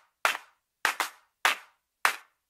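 Three sharp percussion hits of a sparse music beat, evenly spaced a little over half a second apart, each dying away quickly.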